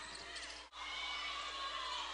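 Basketball game sound: sneakers squeaking on the hardwood court in short, high-pitched squeals, with the sound cutting out for a moment just under a second in.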